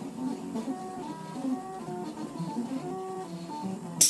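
Stepper motors of a homemade syringe-extruder 3D printer running mid-print, giving a quick string of short whining tones that jump in pitch with each move of the head and bed.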